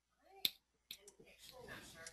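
A sharp click about half a second in and a softer one just before a second, over near silence, followed by faint, low talking.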